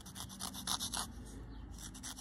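Paper tortillon tip rubbed back and forth on an emery board in a run of quick, faint scratchy strokes, several a second, sanding the graphite off the blending stump's tip.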